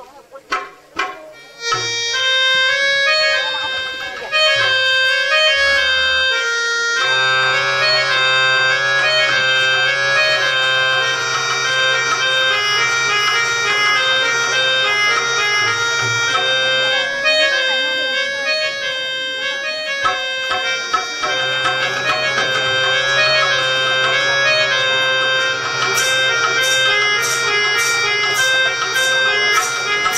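Live stage music: a reed instrument plays a melody moving in steps over a steady low drone, and a quick run of sharp metallic strikes comes in near the end.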